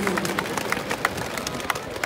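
Large stadium crowd with scattered, irregular handclaps over a steady background murmur.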